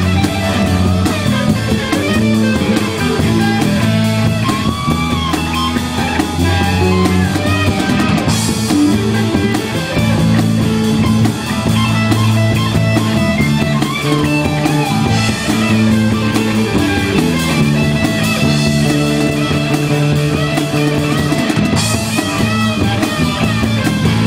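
Live rock band playing an instrumental passage of a blues-rock song: electric guitars over a drum kit. Cymbal crashes come about eight seconds in and again near the end.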